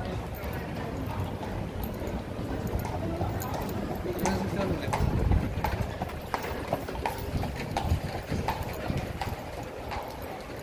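A carriage horse's hooves clip-clopping on an asphalt street as a horse-drawn carriage passes, the hoofbeats loudest about halfway through and thinning out near the end.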